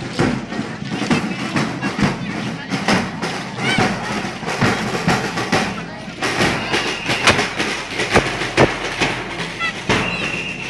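Parade street noise: crowd voices and music mixed with many sharp, irregular hits, and a short held high note about six and a half seconds in.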